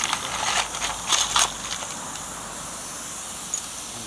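Quick metallic clicks and rattles in the first second and a half as fittings on the backhead of a live-steam model Ivatt 2-6-2 tank locomotive are handled, over a steady hiss of steam from the engine in steam.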